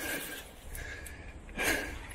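A man breathing hard while walking up a steep slope, puffing out short breaths about once a second, with a louder exhale near the end.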